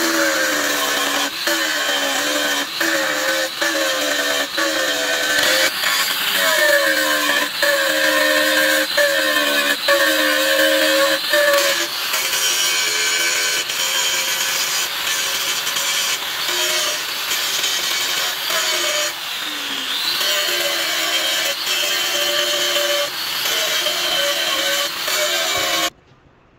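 Angle grinder cutting into a metal pillow block bearing housing: a loud, hissing grind over the motor's whine, which drops in pitch each time the disc is pressed into the cut and climbs back when the pressure eases, over and over.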